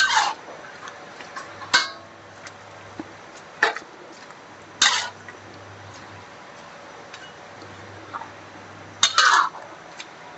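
Metal spatula scraping and clanking against a steel wok as a seafood and fern-shoot broth is stirred: about five sharp scrapes spaced a second or two apart, the last and longest near the end, over a faint steady hum.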